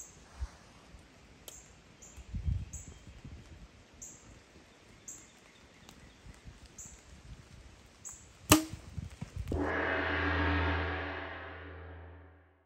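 A compound bow shot once about eight and a half seconds in, a single sharp crack as the string is released. About a second later a sustained ringing tone with a deep hum, like a struck gong, starts and fades out.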